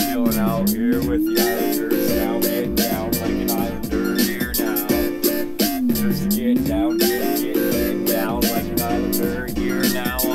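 Instrumental backing beat with a steady drum pattern and sustained tones, where a sliding tone dips and then climbs back up, twice.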